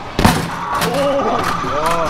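A fist strikes the punching bag of a 'Dragon Punch' arcade boxing machine, one loud thud a moment in. The machine then sounds electronic tones, with a few smaller clicks, while its score display counts up.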